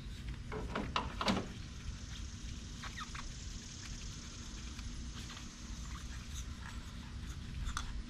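Hands and tools working in a car engine bay: a few sharp clicks early on, then scattered small clicks and squeaks of metal and plastic parts being handled, over a low steady rumble.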